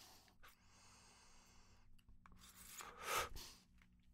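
A faint, slow draw of breath through a Crafty Plus portable vaporizer, then a breathy exhale of the vapour about three seconds in.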